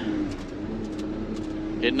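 Truck engine running steadily, heard from inside the cab as a low hum with a held drone, and a few light rattles in the first second.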